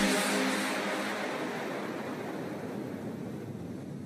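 The closing tail of an electronic dance track: the notes have stopped and a hiss-like wash of sound fades steadily away.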